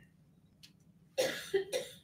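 A man coughs, a short cough in two parts starting about a second in.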